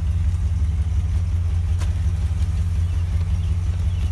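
An engine running steadily, heard as a low, even hum with no change in speed.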